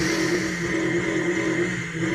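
A car engine running steadily, a low even hum at a constant pitch.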